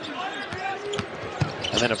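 A basketball being dribbled on a hardwood court, with sharp bounces about every half second and voices in the background.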